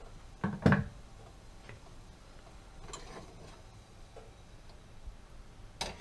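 Handling sounds: a few scattered light clicks and taps, the loudest a little under a second in, over quiet room tone.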